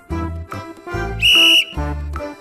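A whistle blown once, a short steady high blast a little past the middle: the signal in a copy-the-pose game to take up the next pose. Under it plays children's background music with a bass note about twice a second.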